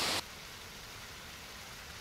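Steady hiss that drops abruptly to a much fainter steady hiss a fraction of a second in, with no distinct event on top.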